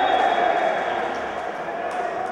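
A man's long, high, held goal shout, slowly fading, as a futsal goal goes in.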